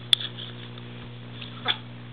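A sharp click just after the start, then about a second and a half in a brief yip or whimper from a dog that falls quickly in pitch, over a steady low hum.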